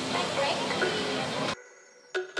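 Food sizzling on a hot street-food griddle, a steady hiss with faint crowd chatter behind it, cutting off suddenly about one and a half seconds in.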